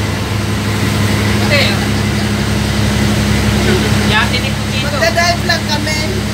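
A boat's engine running steadily, a constant low drone under the deck, with voices over it.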